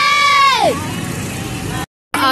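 A loud high-pitched tone swooping up and down, then a tractor engine running steadily for about a second before the sound cuts off suddenly.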